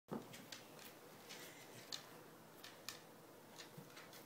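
Near silence with a few faint, scattered clicks and ticks.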